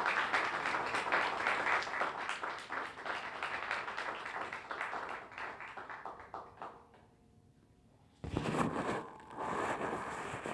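Small audience applauding, dying away over about seven seconds. After a short lull there is a sudden bump and rustling from the microphone being handled.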